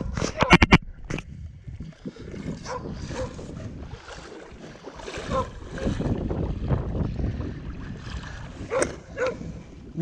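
Smålandsstövare hound whining in short calls every few seconds, two close together near the end, over a steady low noise. A few sharp knocks from the camera being handled in the first second are the loudest sounds.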